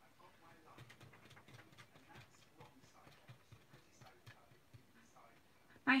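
A piece of card stock being tapped and flicked to knock off loose embossing powder, a run of small, faint, irregular taps with light paper rustling.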